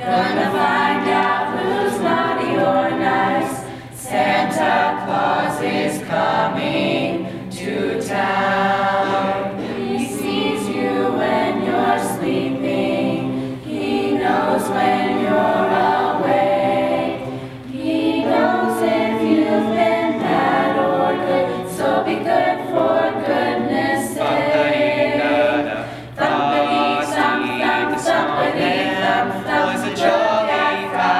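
Mixed high-school choir singing a cappella in a medley of Santa songs, with brief dips between phrases.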